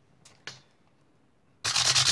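Quick, short back-and-forth strokes of a hand-held fret-levelling block scraping over the metal frets of a guitar neck, starting about one and a half seconds in. High frets are being filed down so the strings stop choking out.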